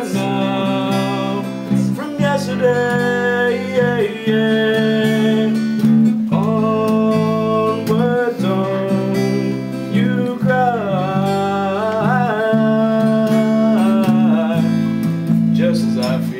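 Acoustic guitar strummed together with an electric bass in a steady, loud passage, the bass notes changing every couple of seconds. A sustained melody line slides up and down between notes over the top.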